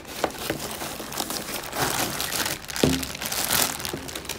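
Clear plastic bags and a cardboard box crinkling and rustling irregularly as packaging is handled by hand, with a single dull knock about three seconds in.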